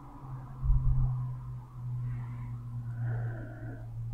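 A man's low, drawn-out hum in the throat, held for several seconds with breath noise around it.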